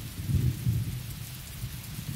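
Steady rain with a low, fluctuating rumble of thunder under it.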